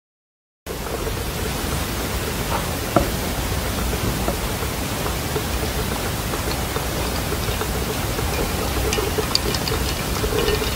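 Acrylic crystal gems pouring onto a pile: a steady dense rushing hiss with scattered small clicks, after a short silence at the start.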